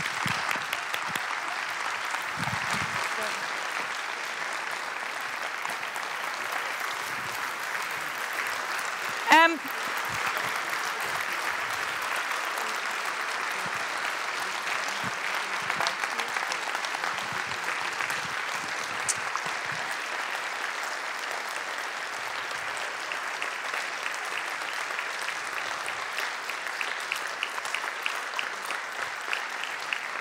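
Audience giving a standing ovation: steady, sustained applause, with one short, loud pitched sound standing out about nine seconds in.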